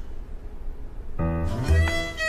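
Background score entering about a second in: bowed strings with a sliding note, after a quieter first second.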